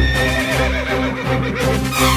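A horse whinnying once at the very beginning, a high, slightly falling call that fades within about a second, over background music with a steady beat.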